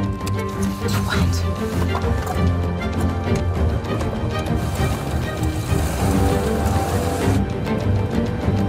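Background music score with a steady beat. A hiss joins it for about two seconds near the end.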